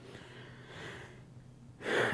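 A man's soft intake of breath, about a second long, picked up close by a lapel microphone.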